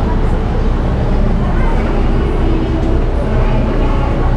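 Other people's voices chattering in the background over a steady low rumble.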